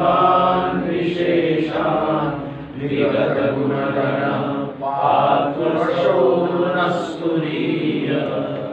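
A man's solo voice chanting Sanskrit verses in a steady recitation tone, holding long notes in phrases with brief pauses for breath.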